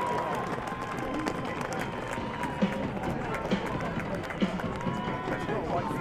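On-pitch sound of a field hockey match on artificial turf: players shouting calls and running, with sharp clacks of sticks hitting the ball, three louder ones about midway.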